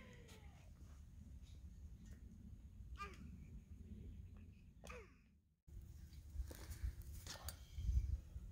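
Quiet outdoor background: a low steady rumble with a few faint, brief sounds, and a short break in the sound a little past halfway.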